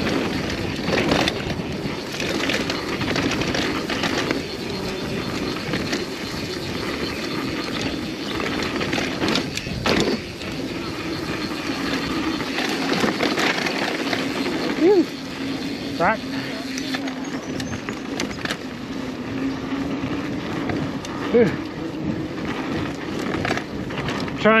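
Mountain bike descending a fast dirt trail: steady tyre and wind noise, with sharp knocks and rattles from the bike over bumps and a few brief squeaks.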